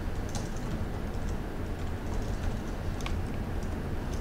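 Typing on a computer keyboard: a string of light, irregular key clicks over a steady low hum.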